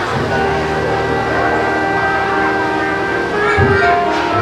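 A song's instrumental backing track starts through the stage sound system: sustained chords held over a low bass note, shifting to a new chord near the end.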